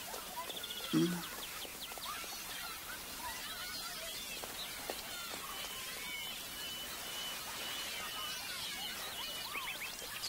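Outdoor ambience of birds chirping, many short calls scattered throughout, with a thin steady high note held for a few seconds in the second half. A brief low voice sound comes about a second in.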